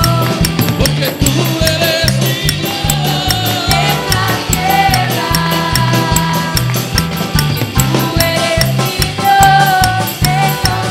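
Live worship band playing: drum kit, electric bass guitar, keyboard and electric guitar together, with a steady driving beat.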